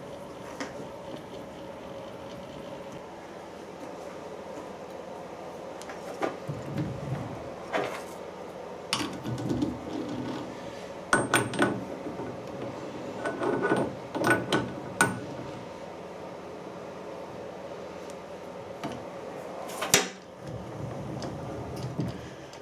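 Light metal-on-metal clinks and scrapes as a steel workpiece is handled and seated in the jaws of a dividing head's chuck: a scattered run of clicks through the middle and one sharper clink near the end, over a faint steady hum.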